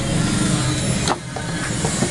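Steady low mechanical rumble in the background, with a single sharp knock about a second in from a part of the plastic electric-fan stand being handled.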